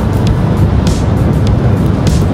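Steady low rumble of a moving car heard from inside the cabin, with background music playing over it.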